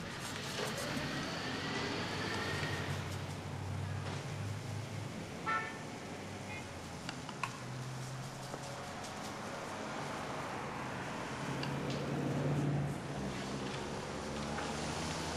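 Street traffic ambience: a low drone of cars passing, rising and falling, with a short car-horn toot about five and a half seconds in.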